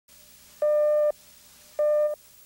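Countdown beeps on a television feed slate: two beeps of one steady tone, each about half a second long and about a second apart.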